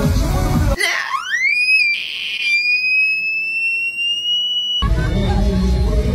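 Pop music breaks off under a single piercing high-pitched squeal that sweeps sharply upward, then holds for about two seconds while creeping slightly higher, before the music comes back in near the end.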